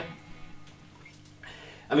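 Distorted electric guitar chord dying away through an amplifier, then faint amp noise with a low steady hum.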